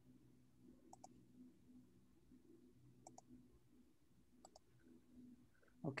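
Near silence with a faint low hum, broken three times by quiet double clicks of a computer mouse, about a second, three seconds and four and a half seconds in.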